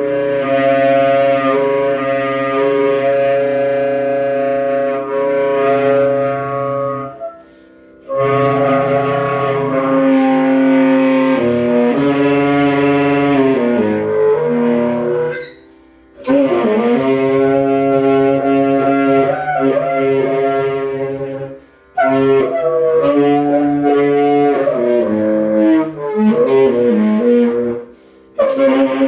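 Saxophone played solo in a free-jazz style: long held notes and bending phrases, broken by short pauses every six to eight seconds.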